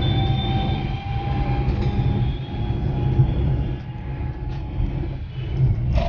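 Road and engine noise heard from inside a moving car: a steady low rumble, with a faint hum that fades out a couple of seconds in.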